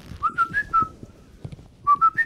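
A person whistling a short four-note tune, played once and starting again near the end, with faint knocks in the background.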